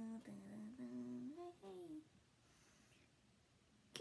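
A woman humming a few wordless notes for about two seconds, then near silence.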